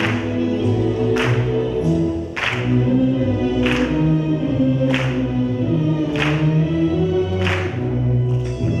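A chorus singing with musical accompaniment on held notes, marked by a sharp percussive accent about every second and a quarter.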